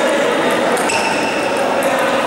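Table tennis ball clicking off bats and tables, over a steady murmur of voices in the hall.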